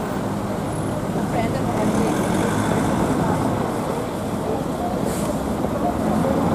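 Steady road traffic on a busy street: cars and other vehicles passing close by, with the noise of engines and tyres holding at an even level throughout.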